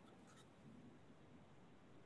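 Near silence: faint room tone during a pause in speech.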